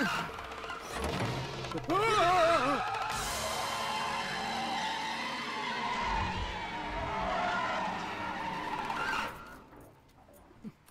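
A car being driven hard, its engine running at speed and its tyres squealing through a turn about two seconds in, mixed with film action music. The sound drops away sharply near the end.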